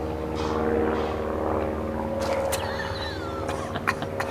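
A steady engine drone holding one pitch, easing off near the end, with a few faint clicks.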